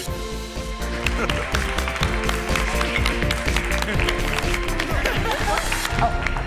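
Background music with sustained notes. From about a second in it is joined by clapping and excited, wordless voices of a small group.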